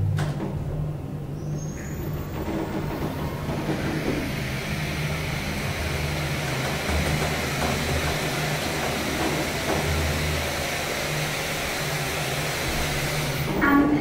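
Hydraulic elevator car travelling down: a steady hum and hiss of the ride at an even level. A brief rising whistle comes about two seconds in as the car gets under way.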